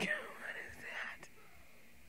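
Faint breathy vocal sounds in the first second, then quiet room tone.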